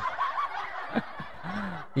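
A man snickering quietly, holding back laughter, after a brief 'oh, uh'.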